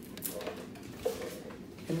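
Light clicking and rustling of coiled plastic electrode lead wires being handled and uncurled.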